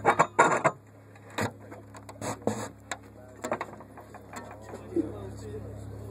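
Handling knocks and clicks of a camera being set on a metal music stand, a cluster of sharp knocks in the first second and scattered lighter clicks after, over a steady low hum.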